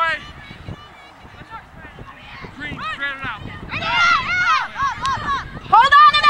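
Several women's voices shouting and calling out across the field, overlapping. Quieter at first, louder from about halfway, with a loud shout right at the end.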